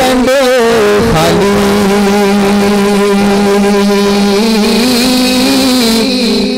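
A man singing a naat into a microphone: a brief wavering run, then one long note held steady for about four seconds that breaks off near the end.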